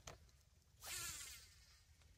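Near silence, with one faint brief swish about a second in.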